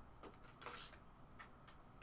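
Near silence, with a few faint clicks and a soft rustle of trading cards being handled.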